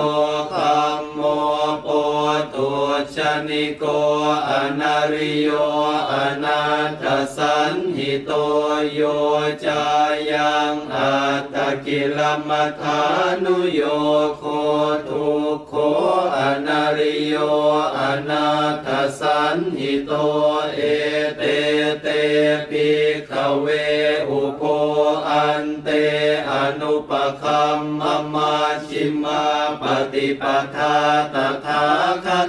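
Buddhist monks chanting Pali verses in unison, a continuous recitation held on a near-constant pitch.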